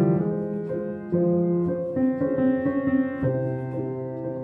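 Solo piano improvisation: slow, sustained chords ringing on, with a new chord struck about every second.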